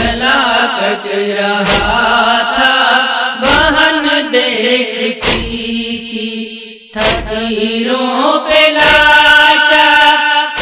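Chanted vocal melody of an Urdu nauha (Muharram lament), a sustained, melismatic line without clear words over a steady low drone. A dull thud falls about every 1.8 s, keeping a slow, even beat.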